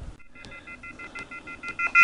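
A smartphone sounding a rapid, pulsing electronic beep in three high pitches, starting about a quarter second in. It is the alert that sounds when the Bluetooth link to the quadcopter's MultiWii flight controller connects.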